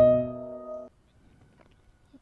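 Piano: a new right-hand note struck at the start over a held lower note, the chord ringing until it cuts off together just under a second in as the keys are released. Near silence follows.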